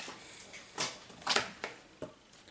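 Cardboard makeup packaging being handled as a palette is pulled out of its box through a finger hole: three brief scraping, rustling sounds.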